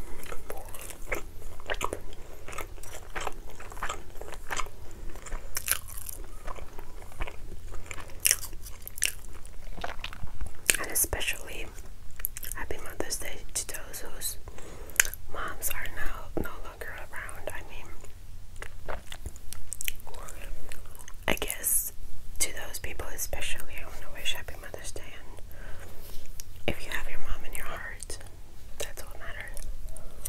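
Close-miked chewing and mouth sounds from eating soft ravioli, with frequent sharp clicks of a metal fork against the plate.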